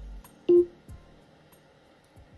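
Amazon Echo Dot (2nd generation), docked in a Divoom Adot speaker, playing its short volume-confirmation beep after a "volume seven" command. One sudden tone about half a second in, fading over a few tenths of a second.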